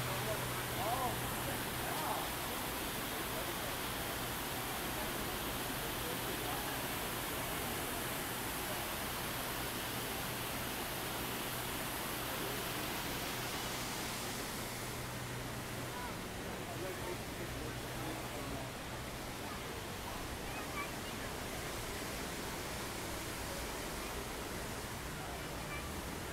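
Fountain jets splashing into a basin: a steady rush of water under a murmur of voices and a low steady hum. The water rush thins a little over halfway through.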